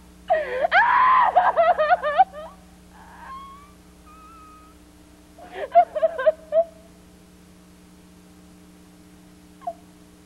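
A woman's high-pitched giggling laughter in bursts: a long fit in the first two seconds, faint squeaks a little later, and another short burst about six seconds in.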